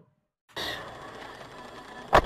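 About half a second of dead silence, then a steady hiss of car cabin noise from an in-car camera recording of a slowly moving car.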